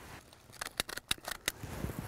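Hand stapler clicking in a quick run of sharp clicks, lasting about a second, as a paper bud cap is stapled around the top bud of a jack pine seedling.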